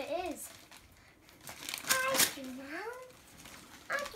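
Gift-wrapping paper crinkling and tearing as a present is unwrapped by hand, with a few short rustles about two seconds in, alongside brief vocal sounds from a child.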